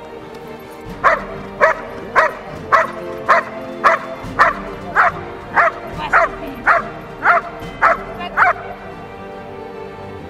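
Belgian Malinois barking in a steady, regular series: about fourteen sharp barks, roughly two a second, starting about a second in and stopping shortly before the end, over background music.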